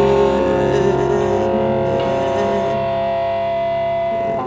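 A live band holds a long chord that rings on steadily, with many sustained tones, as a song closes; it starts to die away just after.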